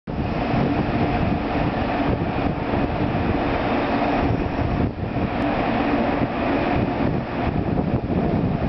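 JR Kyushu 783 series electric train starting off slowly from the platform: a steady hum and rumble with a faint tone in it.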